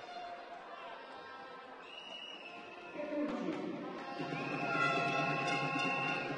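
Basketball hall ambience: a low crowd murmur, then louder music with the crowd from about three seconds in, building toward the end.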